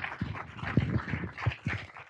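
Audience applauding: a dense patter of many hands clapping that cuts off suddenly at the very end.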